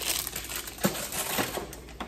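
Rustling of paper and plastic packaging being handled, with two light knocks about a second in and half a second later; the rustling fades near the end.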